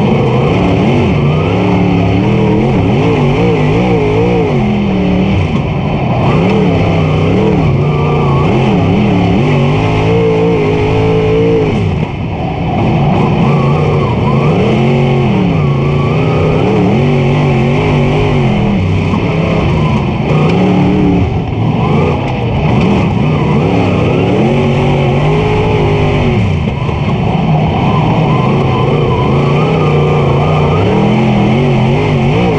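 Super Late Model dirt car's V8 race engine heard from inside the cockpit, revving up and backing off over and over as it goes around the track, the pitch rising and falling every couple of seconds.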